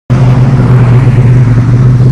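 Buick Regal's newly installed engine idling loudly and steadily, with a low-pitched tone; the engine is still being tested and tuned.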